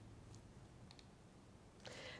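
Near silence: faint room tone with a couple of faint clicks.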